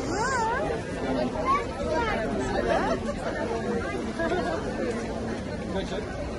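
Crowd chatter: many people talking at once, with a higher wavering voice near the start.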